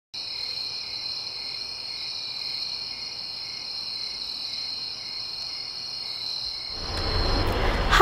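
Crickets chirring steadily in a high, unbroken trill. Near the end the chirring fades out as a louder, duller hiss of room noise comes up.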